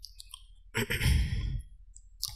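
A man's breath or sigh into a close microphone, a single noisy rush lasting just under a second, starting about three-quarters of a second in.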